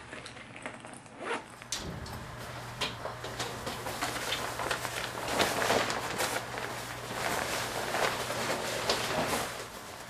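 Nylon puffer jacket rustling as it is pulled on and shrugged into, with zipper handling near the end.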